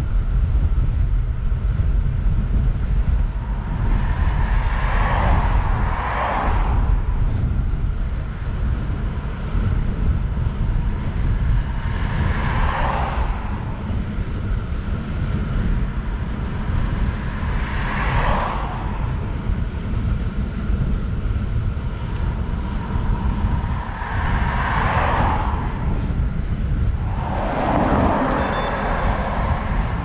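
Wind buffeting the microphone of a camera on a moving bicycle, a steady low rumble throughout. Over it, about five vehicles pass one after another, each a swell of tyre and engine noise that rises and fades within a second or two.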